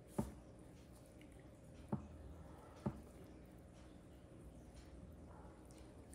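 Thick cake batter poured and scraped from a glass bowl into a bundt pan: faint wet plops with three short knocks in the first three seconds, the first the loudest.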